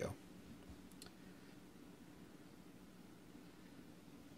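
Near silence with a faint steady low hum. There is a sharp click right at the start and a faint small click about a second in: metal clicks from a dual kanthal coil being handled and set into the posts of a rebuildable atomizer deck.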